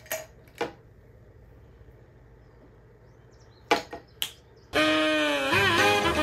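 A few sharp clicks and clinks of felt-tip markers being picked from a marker cup and their caps pulled and snapped, then music starts abruptly near the end and is the loudest sound.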